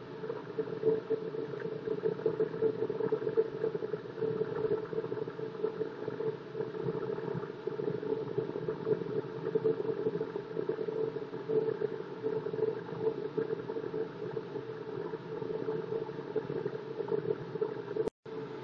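Delta wood lathe running with an HDPE plastic blank spinning in it: a steady motor hum with a constant pitch, wavering slightly in loudness.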